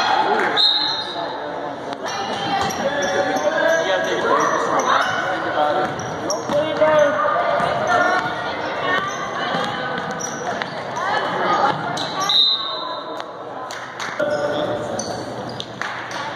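A basketball bouncing on a hardwood gym floor during play, with voices calling out across the hall, all echoing in the large gym.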